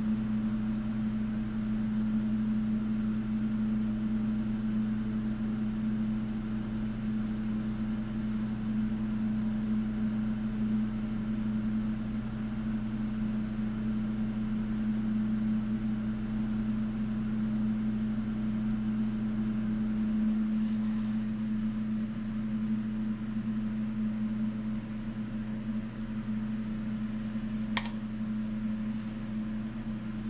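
Steady low machine hum, one of its lower tones dropping out about two-thirds of the way through, with a single sharp click near the end.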